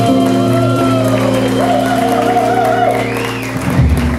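Live swing jazz band with saxophone, guitar and drums holding a long final chord with a wavering horn line over it. The chord stops together with a last low hit near the end, closing the tune.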